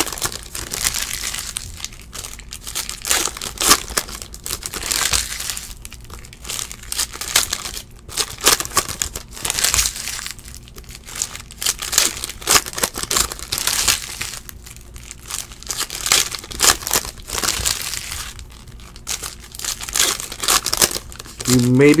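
Foil wrappers of 2017-18 Optic basketball card packs crinkling and tearing as they are ripped open by hand, a continuous run of irregular rustles.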